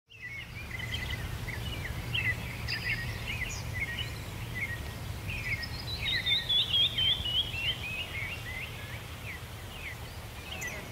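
Songbirds chirping and singing, with one bird's run of notes falling in pitch about six seconds in, over a steady low rumble.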